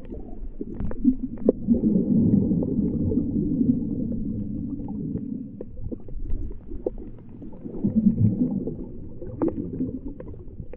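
Muffled underwater sound picked up by a GoPro in its waterproof housing, slowed to half speed: a low, rumbling wash of moving water with scattered sharp clicks and pops. It swells louder about a second in and again near the end.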